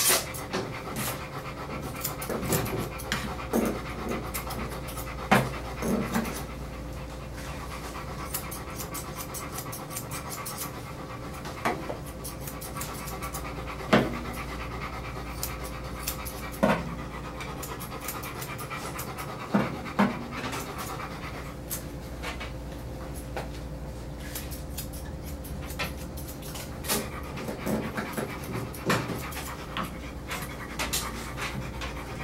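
Golden retriever panting steadily while its paw fur is trimmed, with frequent short sharp snips of grooming scissors. A steady faint tone runs underneath: an alarm going off next door.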